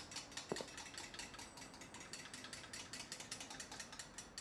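Faint, rapid mechanical clicking and ratcheting from wooden hand-worked workshop machines, with one louder knock about half a second in.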